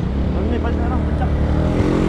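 Steady low rumble of a motor vehicle's engine in traffic, with faint voices.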